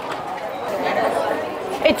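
Indistinct background chatter of other people's voices, a low steady murmur without clear words.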